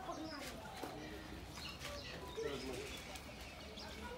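Faint background of distant voices with bird calls mixed in, a few soft clicks among them.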